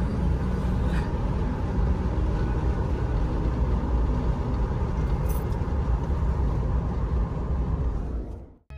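Steady low rumble of road noise inside a moving car's cabin at highway speed.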